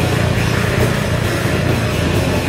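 Live heavy rock band playing loudly, with electric bass in a dense, steady wall of sound.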